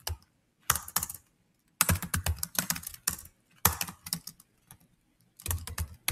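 Computer keyboard typing: quick runs of keystroke clicks in four short bursts, with brief pauses between them.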